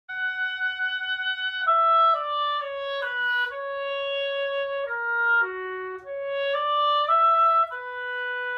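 Oboe playing a slow, smooth melody: a long held opening note, a stepwise descent, a dip to a low note about halfway through, then a climb back up that settles on a held note near the end.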